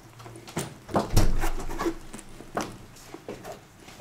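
Knocks, clicks and a heavy thump of people moving about at a front door in a small hallway, the loudest thump about a second in.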